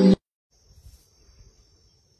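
Background music cuts off abruptly at the very start. From about half a second in comes a faint, steady, high-pitched insect chirring.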